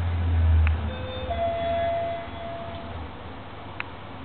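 Traction freight lift car arriving at a floor: its low travel hum dies away over the first couple of seconds as the car slows and stops. An electronic arrival chime sounds meanwhile, a short lower note then a longer higher one, with a sharp click just before it and another near the end.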